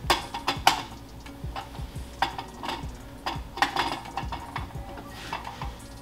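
Irregular small clicks, knocks and scrapes of a microscope condenser being handled and fitted onto the Nikon TS100's illuminator pillar.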